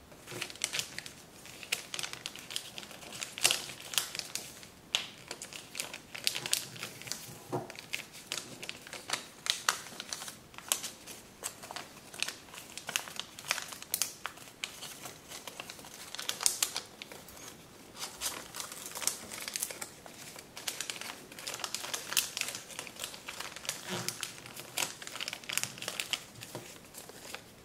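A sheet of kraft paper being folded and creased by hand: irregular crinkling and crackling, with frequent sharp snaps as folds are pressed in.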